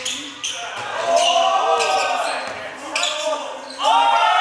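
A basketball bouncing several times on a hardwood gym floor during play, with players' voices shouting, echoing in a large gym.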